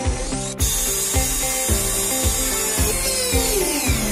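Hand-held electric drill boring through a soft wooden board, its motor whine falling in pitch as it winds down near the end. Background acoustic music with a steady beat plays throughout.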